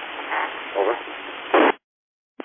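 FM two-way radio audio with a hiss under the voice. At the end of the transmission there is a short, loud burst of static: the squelch tail as the station unkeys. The receiver then cuts to dead silence.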